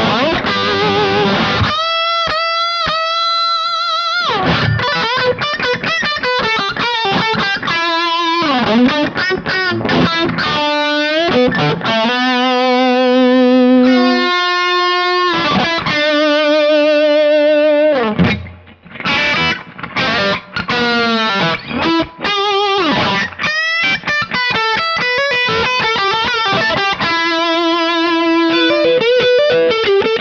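Electric guitar played through a Kemper profile of a 1965 Fender Bassman amp, with overdrive. It plays single-note lead lines with string bends and held notes. The guitar is first an ESP Phoenix II, and later a Fender Stratocaster.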